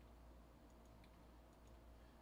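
Near silence: room tone with a low hum and a few faint computer clicks.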